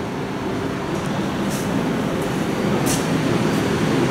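Hydraulic elevator running as the car travels away: a steady mechanical hum with several low tones, growing slightly louder.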